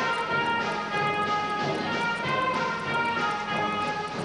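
A school concert band playing a piece, held wind chords moving from one note to the next every half second or so.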